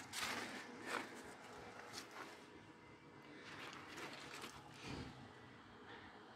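Faint background with a handful of soft, scattered knocks and scuffs from someone moving about.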